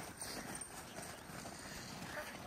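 Faint footfalls of two small dogs trotting on a groomed, packed-snow ski track.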